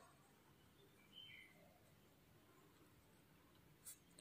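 Near silence: room tone with the faint scratch of a fine-tip ink pen drawing small spirals on a paper tile.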